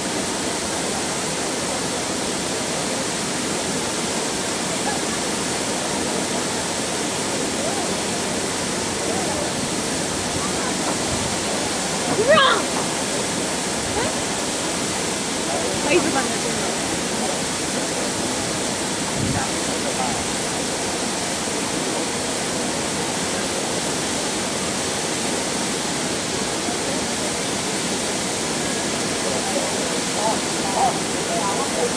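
Steady rushing spray of a fountain water screen, with crowd voices murmuring underneath and a louder voice rising out of it about twelve seconds in and again about sixteen seconds in.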